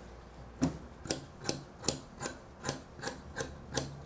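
Scissors cutting through several layers of folded fabric: a series of sharp, evenly spaced snips, about two or three a second, starting about half a second in.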